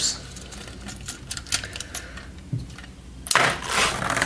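Hard LEGO plastic parts clicking and tapping as the model is handled, with a louder rattling scrape near the end.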